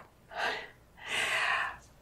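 A woman breathing into a microphone: a short breath about half a second in, then a longer one lasting nearly a second.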